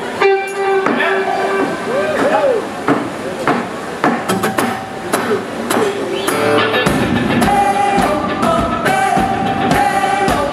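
Live band starting a song: guitar playing the intro alone, then drums and bass come in about seven seconds in and the full band plays on.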